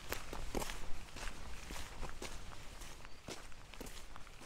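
Footsteps of a walker on a sandy dirt track, about two steps a second.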